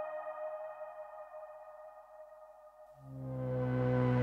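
A DSI Tetra analog synthesizer playing preset patches. One held note dies away with a reverb tail, and about three seconds in a new, lower patch note swells in gradually.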